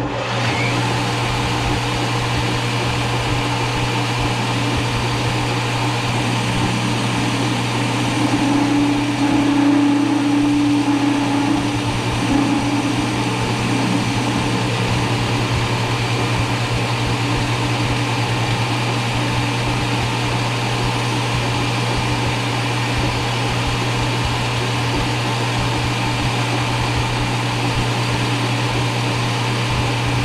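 Metal lathe starting up and then running steadily with a low motor hum, turning a small 4140 chrome-moly steel blank with a carbide-insert tool. A steadier, louder tone comes in for a few seconds about eight seconds in.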